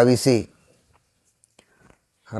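A man speaking in Kannada, his phrase ending about half a second in, followed by near silence with a few faint clicks near the end.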